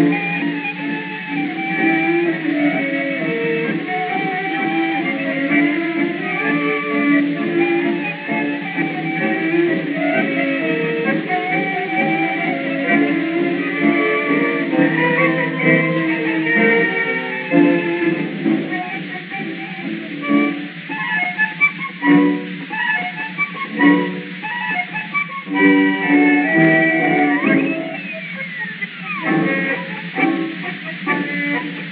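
A 1920 acoustic-era Victor disc recording of an instrumental tango by a típica orchestra, with bandoneon, violin and piano. The sound is thin and narrow, with no deep bass and no high treble, as from an early acoustic recording.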